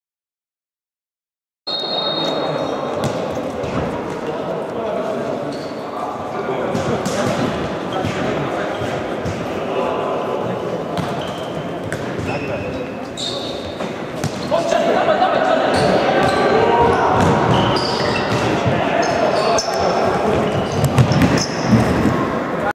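After a second and a half of silence, a futsal match in a large sports hall: a ball being kicked and bouncing on the floor, with players' voices calling out, all echoing. It grows louder about halfway through.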